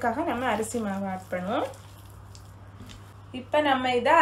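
A woman speaking in Tamil, with a pause of about two seconds in the middle that holds only faint background noise.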